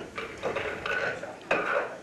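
Pool shot: the cue tip strikes the cue ball, then the balls click together and knock off the cushions in a series of sharp clacks, the loudest about a second and a half in.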